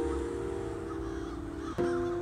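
Improvised solo piano holding a chord that fades slowly, with new notes struck near the end; crows cawing underneath the music.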